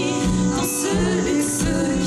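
Live band playing: women singing into microphones over a trumpet, electric guitar, a steady repeating bass line and drums.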